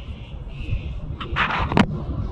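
Wind buffeting the microphone, then, about one and a half seconds in, a brief rustle ending in a sharp knock as a hand takes hold of the camera.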